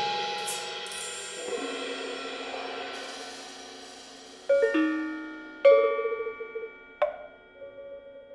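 Solo contemporary percussion: struck metal instruments ring on and slowly fade, then three sharp metallic strikes about four and a half, five and a half and seven seconds in, each leaving bright ringing tones.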